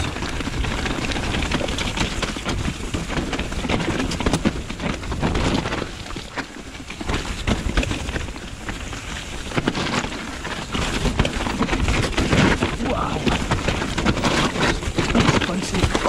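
Mountain bike riding down a rocky forest trail: tyres rumbling over rocks with frequent knocks and rattles from the bike and the chest-mounted camera, and wind on the microphone. It eases briefly about six seconds in, then picks up again.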